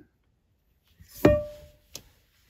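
A single struck musical note about a second in, ringing with a held pitch and fading over about half a second, followed by a short click near the end.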